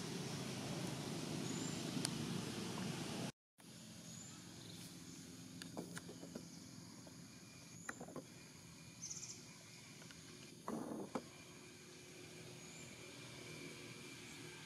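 Outdoor ambience. A steady noisy hiss runs for about three seconds, then there is a brief gap of silence. After it the background is quieter, with scattered soft clicks, faint high chirps and a short rustle about eleven seconds in.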